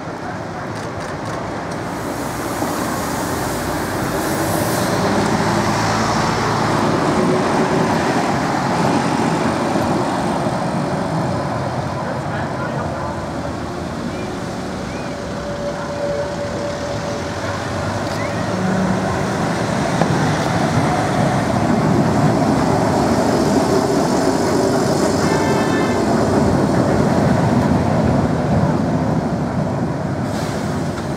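Ex-Vestische DÜWAG bogie tramcars running along street track amid passing car traffic, the running noise swelling twice as the trams draw close.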